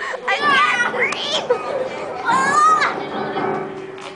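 Kids laughing and squealing in high voices, with a quick rising squeal a little after a second and a longer drawn-out squeal about two and a half seconds in.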